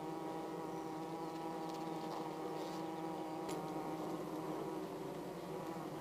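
Steady buzzing hum of honeybees in a hive.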